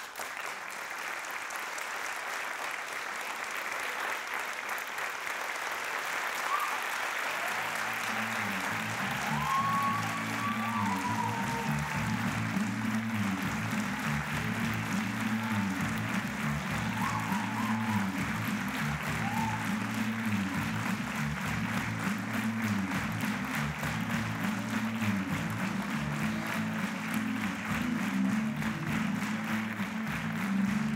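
Theatre audience applauding, growing louder over the first several seconds. About eight seconds in, music with a repeating bass line joins the applause and carries on under it.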